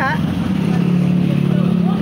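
Motorcycle engine idling with a steady low hum that swells about half a second in and holds.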